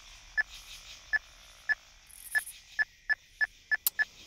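Mobile phone keypad beeping as keys are pressed to dial a number: about nine short beeps, all at the same pitch, at uneven intervals that come quicker in the second half.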